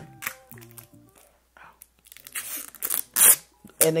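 Rustling and scuffing handling noise as a pair of eyeglasses is put on: a few short scratchy bursts in the second half, the loudest about three seconds in.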